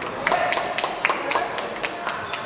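Table tennis balls clicking off bats and tables at several tables in a large hall, an irregular patter of sharp clicks.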